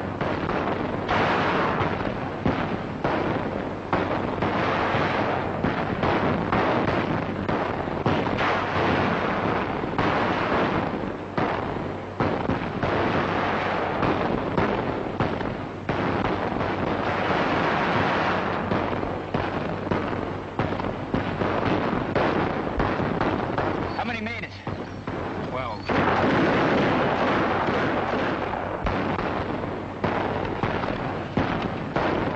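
Film battle sound effects: continuous rifle and machine-gun fire mixed with explosions, a dense barrage that eases briefly near the end and then swells again.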